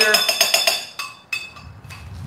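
A metal spoon clinking and scraping against a glass measuring cup while whipped cream cheese is scooped in. A quick run of ringing clinks ends about a second in, and one more clink comes shortly after.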